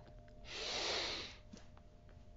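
A woman taking one deep breath: a single breath sound about a second long, starting about half a second in.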